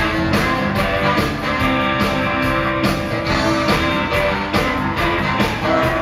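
Live band playing an instrumental passage: drums keep a steady beat under guitar, bass and held notes.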